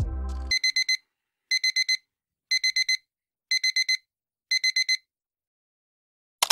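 Electronic alarm beeping: groups of four quick high beeps, one group a second, five times over. The tail of a music track cuts off about half a second in, just before the beeping starts.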